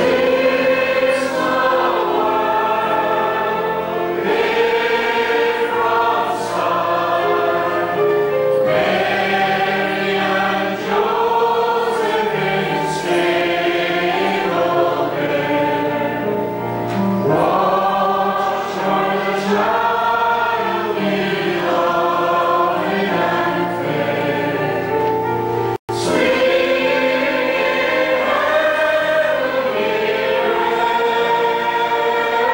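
Church choir singing a Christian song together, the melody carried in sustained sung phrases. The recording drops out for a split second about 26 seconds in.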